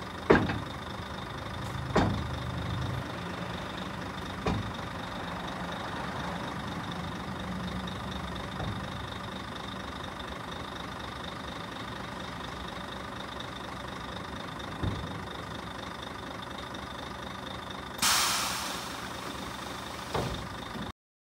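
Tandem-axle tipper trailer's steel dump body being lowered over a truck's steady idle, with sharp metal clanks at the start and about two and four and a half seconds in. A loud burst of hiss comes near the end.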